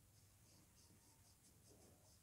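Very faint scratching of a sketch pen's tip on origami paper: a run of short, quick strokes as the dog's nose is drawn and filled in.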